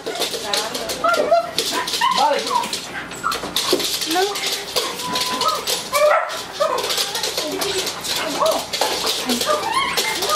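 Two pet dogs whining and yipping excitedly while greeting their returning owner, in many short high whimpers that rise and fall in pitch.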